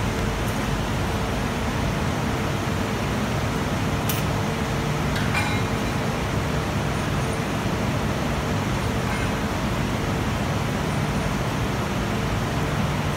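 Steady industrial machinery noise of a sinter plant floor: a continuous rushing rumble with a low, even hum, and a faint click or two around the middle.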